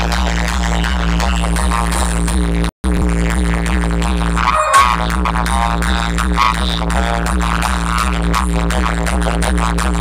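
Loud electronic dance music with a heavy, steady bass beat, played through a large outdoor DJ speaker stack. The sound cuts out completely for a split second about three seconds in, and a short falling sweep effect comes near the middle.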